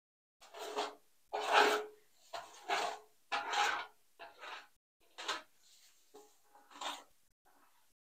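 A brush spreading paint stripper over an enamelled bathtub: a series of about eight separate rubbing swishes, each under a second long.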